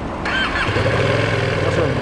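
Ducati Panigale V2's V-twin engine being started: a short whine from the starter about a quarter second in, then the engine catches within half a second and settles into a steady idle.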